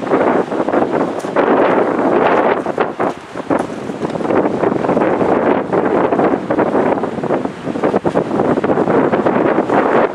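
Wind buffeting the microphone: a loud, rushing noise that surges and eases unevenly, with a brief lull about three seconds in.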